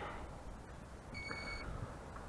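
A single electronic beep, about half a second long, a bit over a second in, from the Bayangtoys X21 quadcopter and its remote control as they power up.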